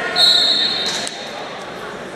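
A referee's whistle blows once, a steady shrill blast of just under a second, over the chatter of voices in a gym.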